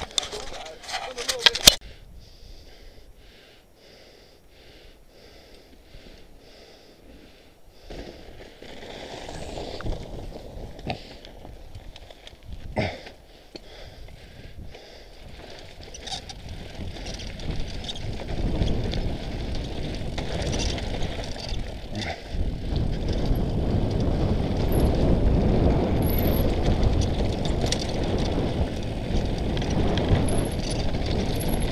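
Mountain bike descending a rocky gravel trail: tyres crunching over loose stones and the bike rattling, with a few sharp knocks in the first two seconds. A low rush of wind on the microphone builds from about halfway and grows louder as speed picks up.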